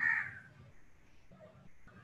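A single harsh bird call, about half a second long, at the start.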